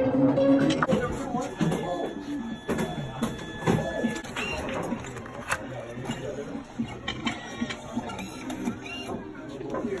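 A photo booth's printer running as it feeds out a strip of photos, under laughter, voices and background music.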